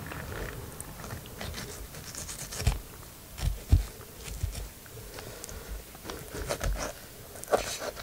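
Knife cutting through a raw fish's flesh and small bones, with irregular crunching and scraping strokes and a few dull knocks a few seconds in.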